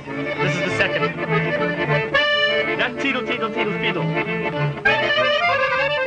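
Piano accordion playing a lively klezmer tune, a running melody over a steady bass pulse.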